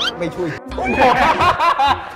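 Several men laughing and snickering together in short, overlapping bursts, starting about a second in after a brief spoken remark.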